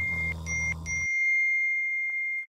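Phone alert tone: one steady, high electronic beep, broken twice briefly, over a low hum that stops about a second in.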